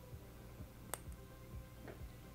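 A single faint, sharp plastic click about a second in, as a small plastic stopper is prised out of a cosmetic pigment jar, with faint music underneath.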